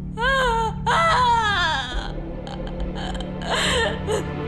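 A young woman crying hard: two long, wavering wails in the first two seconds, then quieter sobbing and another short cry near the end, over background music.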